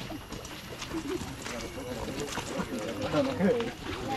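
Several people talking while walking, with footsteps on a wet dirt path.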